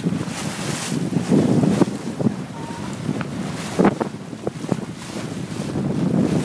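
Wind buffeting the microphone over the rush of water along a sailboat's hull under sail, with a few brief sharp slaps about two and four seconds in.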